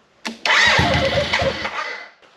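A click, then a BMW K75's starter cranking the inline three-cylinder engine for about a second and a half without it catching, because no fuel tank is hooked up. The cranking stops just before the end.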